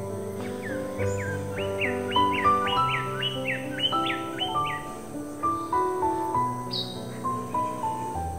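Acoustic guitar playing a slow picked instrumental intro. Over the first half, a bird calls a quick run of about a dozen short, downward-slurred notes, and gives one higher note near the end.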